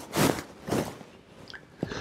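A man breathing audibly into a close headset microphone, two short breaths in the first second, followed by a couple of faint mouth clicks.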